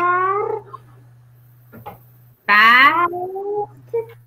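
A young boy's voice sounding out syllables with long drawn-out vowels, one ending about half a second in and a second rising in pitch near the middle, heard over a video call with a steady low hum underneath.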